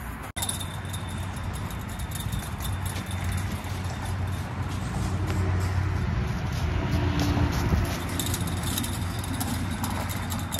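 Steady low outdoor rumble under rustling and crunching of dry fallen leaves underfoot, with scattered short crackles that thicken near the end.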